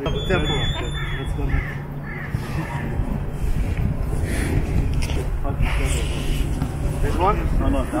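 A man's voice exclaiming, then other voices, with a few harsh bird calls like crows cawing and a steady low hum.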